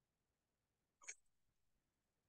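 Near silence, broken about a second in by one short, sharp breath from the person exercising.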